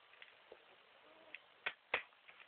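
Two sharp knocks about a quarter second apart near the end, after a few lighter ticks.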